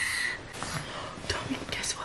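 A woman whispering softly close to a sleeping toddler to wake her, breathy and without full voice. A steady high whistle-like tone fades out in the first moment.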